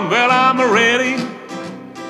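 A man singing a rock and roll song over a strummed acoustic guitar; the voice falls away a little after a second in, leaving the guitar alone and quieter.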